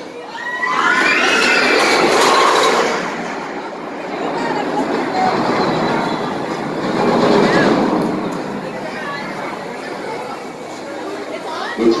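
Flywheel-launched shuttle loop roller coaster train running along its steel track. Riders scream as the noise builds in the first few seconds, and the train's noise swells again around seven seconds in.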